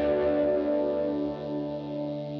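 Background music: a held chord ringing on and slowly fading out after the beat has stopped.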